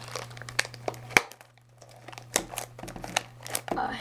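Plastic shrink wrap on a Topps Heritage baseball blaster box crinkling and crackling in the hands, with a sharp click about a second in and a short lull after it.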